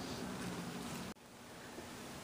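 Faint room noise with no distinct event; the background drops suddenly about a second in at an edit, then stays low.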